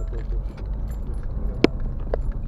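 Car driving slowly over a rough road, heard from inside the cabin: a steady low rumble, with a sharp click from the cabin about one and a half seconds in.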